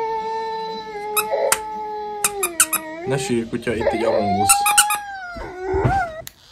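A dog giving long, drawn-out howling whines: one held note that sags slightly and stops about three seconds in, then a higher held note near the end. A few sharp clicks fall in between.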